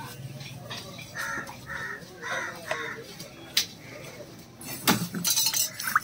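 Butcher's knife working a lamb head on a wooden chopping block: a couple of sharp knocks of the blade on the block, then a brief metallic scrape near the end. A few short animal calls sound in the background early on.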